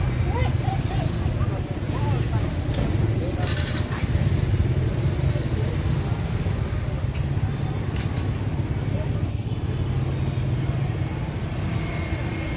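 Busy street-market ambience: a steady low rumble of motorbike traffic running nearby, with indistinct chatter, mostly in the first couple of seconds, and a couple of short clatters.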